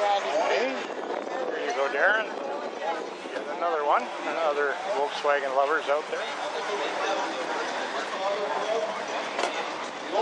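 Bystanders talking, several voices of people chatting close by, with some sharp rises in pitch in the first few seconds and quieter talk later.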